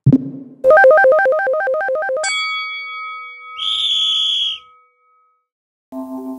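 Short synthesized transition stinger: a low hit, then a fast warbling two-note synth figure, then a bright chime that rings out with a brief high shimmer over it, and about a second of silence before new music begins at the very end.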